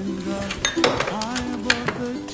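Dishes and utensils clinking in a series of sharp light clicks as a loaded tray is handled, over background music.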